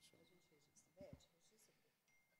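Near silence: room tone with a brief faint voice off-microphone about a second in, and faint ticks and rustles.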